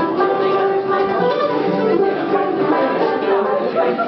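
Acoustic bluegrass string band playing, with plucked guitar, mandolin and banjo notes over sustained tones.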